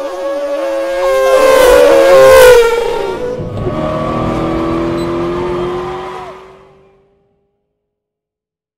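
Car engine sound effect: the engine note swells to a loud pass about two and a half seconds in, its pitch dropping as it goes by. A rising engine note then fades away and ends about seven seconds in.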